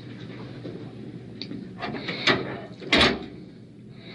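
A few short scuffing and knocking noises over a steady low room hum; the loudest comes about three seconds in.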